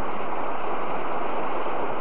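A steady, even rush of water like waves breaking, with no music left.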